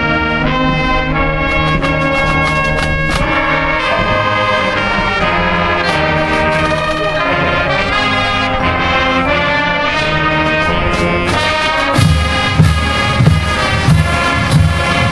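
High school marching band playing, with trumpets and trombones carrying sustained chords over percussion. Near the end, heavy low bass-drum hits come in, a little under a second apart.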